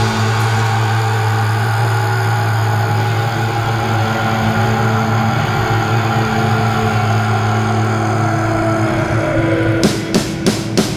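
A metal band's distorted electric guitars and bass holding one low note that rings on steadily with no drums, a faint pitch sliding down near the end; drum strikes come back in right at the end.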